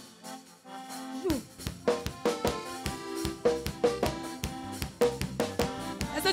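Live church worship band starting up: held instrument tones at first, then the drum kit comes in about a second in and the band settles into a steady, upbeat groove.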